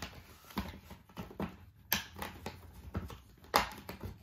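Wax crayon scratching across paper in short, irregular strokes, with a louder one about three and a half seconds in.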